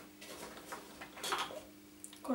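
Faint handling noises: two short rustles as hands work hair up onto the top of the head, over a low steady hum.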